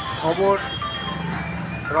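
A man speaking in a short pause-broken phrase, with steady background music underneath.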